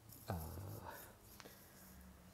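A man's voice saying a hesitant "uh", then a pause holding only a faint steady hum and one faint click about halfway through.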